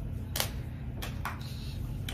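Small scissors snipping at a wig, cutting out its sewn-in combs: three short, sharp clicks, two of them close together about a second in.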